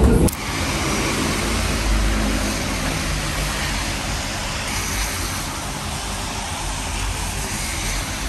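Steady hiss of heavy rain on a wet city street mixed with road traffic, setting in abruptly a moment in.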